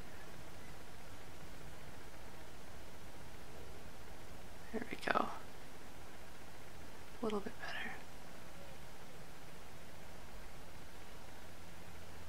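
Steady low hiss of room tone, broken twice by brief murmured vocal sounds from a woman, about five seconds in and again about two seconds later.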